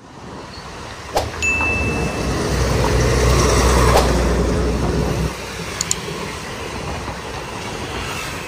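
A truck's engine rumbling as it passes close by, loudest in the middle and dropping off after about five seconds, with lighter car traffic going on after it. A short high tone sounds about a second and a half in, and there are a few sharp clicks.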